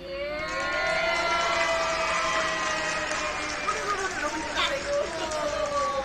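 Several voices at once, holding long, overlapping notes that glide up and down in pitch.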